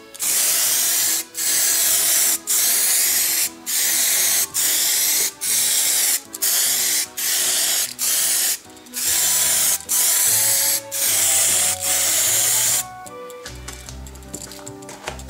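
Aerosol spray paint can hissing in a quick series of short bursts, about one a second, each under a second long; the spraying stops about a second before the end. Background music plays softly underneath.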